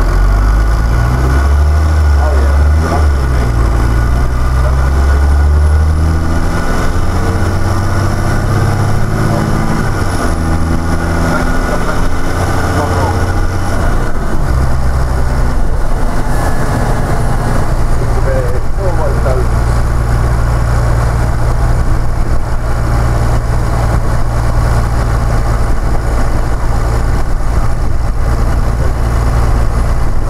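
Diesel engine of an East Lancs Lolyne double-decker bus, heard from inside the passenger saloon. For the first dozen seconds or so its pitch climbs in steps as the bus accelerates through the gears, and after that it runs steadily at a low pitch.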